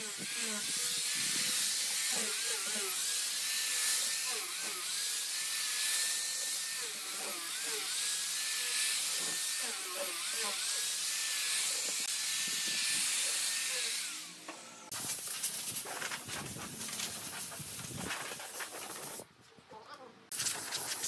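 Electric angle grinder with a sanding disc sanding the edge of a wooden tabletop: a high motor whine that repeatedly sags in pitch and recovers as the disc is pressed into the wood, over a hiss of abrasion. About fourteen seconds in it drops away, followed by a rougher, uneven scratching for several seconds.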